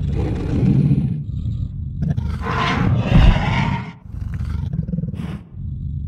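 Recorded dinosaur roar sound effect from a Google 3D AR dinosaur model: a low, rough growl that swells into a louder roar about two and a half seconds in, then a second growl after a short break.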